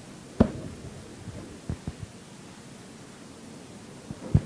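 A few dull thumps over quiet room noise: a sharp one about half a second in, then two smaller ones a little before and at two seconds.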